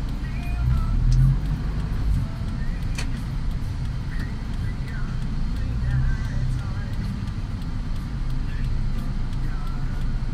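Low, steady rumble of a vehicle driving in city traffic, with a single sharp click about three seconds in.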